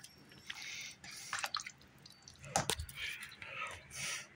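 Ladle scooping stew in a slow cooker: soft wet sloshing and dripping, with a few utensil clicks and one sharper knock a little past halfway.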